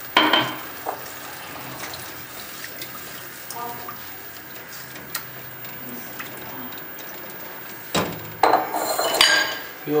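Cookware clatter and stirring: a spatula working through watery chickpea curry in a nonstick pot, with a sharp clatter at the start and a run of loud knocks against the pot near the end.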